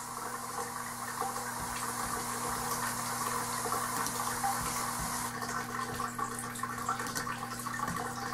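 Steady low hum under a rushing hiss, with a few faint clicks.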